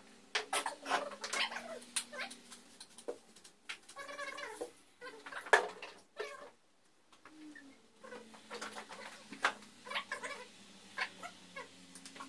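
Wet glass aquarium panes squeaking as they are rubbed and wiped by hand, mixed with scattered sharp clicks and knocks of handling the glass, quiet for about a second in the middle.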